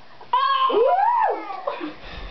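A high, meow-like vocal cry from a girl that starts suddenly, holds, then slides up and back down in pitch over about a second. Two short, fainter sounds follow near the end.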